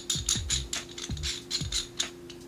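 Quick run of small clicks, about six a second, from metal and plastic parts of a Neewer camera shoulder rig being worked together by hand as a piece is fitted into the rail assembly. The clicks stop near the end. Background music plays underneath.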